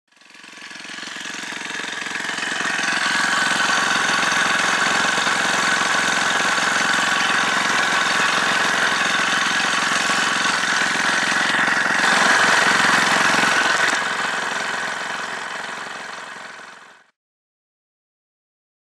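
An engine running steadily, fading in over the first few seconds and fading out to silence near the end, slightly louder for a couple of seconds before the fade.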